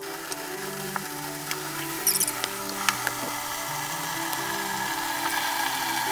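Bathtub faucet running steadily, filling the tub with lukewarm water, under background music with slow, held notes. A few small clicks sound along the way.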